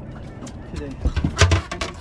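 A landing net holding two freshly caught walleye brought aboard and set down on the boat's deck: a cluster of thumps and knocks about a second in.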